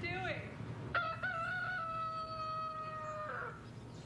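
A rooster crowing: a short rising opening, then one long held note of about two seconds that drops away near the end.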